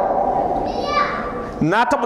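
A pause in a man's talk over a steady electrical hum, broken about a second in by a short high-pitched voice like a child's; the man's speech resumes near the end.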